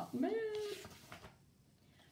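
A house cat meowing once: a short call under a second long that rises, then holds its pitch. A soft rustle of a book page being turned follows.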